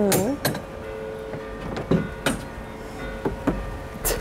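A metal hook latch on a wooden gate being jiggled: several sharp clicks and rattles spread across a few seconds.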